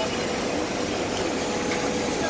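Live seafood tank pumps and aerated water running steadily: a constant hum and hiss with a faint steady tone.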